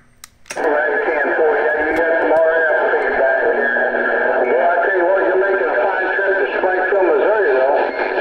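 Incoming AM CB transmission heard through a Cobra 148 GTL ST radio: a narrow, distorted, voice-like signal that comes on about half a second in and holds steadily to the end, with no words that can be made out.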